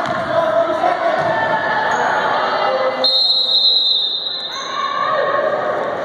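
A basketball bouncing on a hardwood gym floor amid spectators' voices, then about three seconds in a long, steady, high-pitched referee's whistle that stops play.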